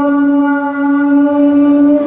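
A man holding one long, steady sung note in a Mường folk song, sung into a microphone.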